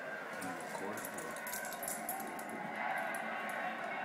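Television sound from a football game broadcast: indistinct commentator's voice over a steady background haze.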